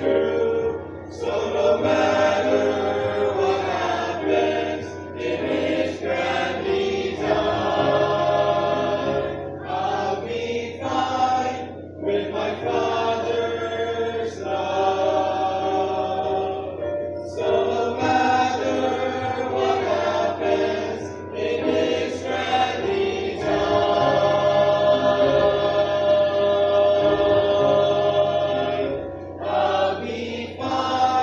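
Mixed youth choir of girls' and boys' voices singing an English worship song about a father's love, line by line with short breaks between phrases.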